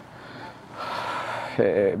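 A man's audible in-breath, lasting under a second, taken mid-sentence; his speech resumes near the end.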